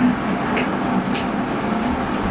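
Powder coating booth's ventilation fans running with a steady hum, with a couple of faint clicks as the spray gun is handled.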